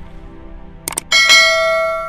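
A quick click just before one second in, then a bright bell chime that rings out and slowly fades, over soft background music. It is the end-screen sound effect for the notification-bell button.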